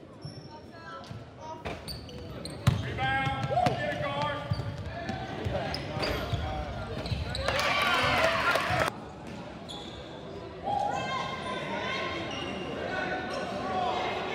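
Basketball game sounds in a large gym: a ball bouncing on the hardwood floor, with players and spectators calling out over one another. There is a louder burst of voices near the middle, and the sound drops and changes abruptly a little later.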